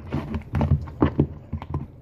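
A run of irregular knocks and clatters, several a second, over a steady low hum.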